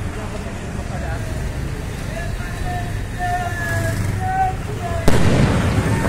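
Crowd voices over a low background rumble, then an aerial firework bursts with a sudden bang about five seconds in, followed by crackling.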